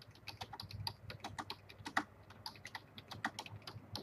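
Faint typing on a computer keyboard: a quick, irregular run of keystrokes.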